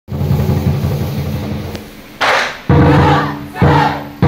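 Opening drum performance on large barrel drums: heavy unison strokes that ring on. The first stroke fades slowly. After a short shout-like burst about two seconds in, two more strokes come about a second apart.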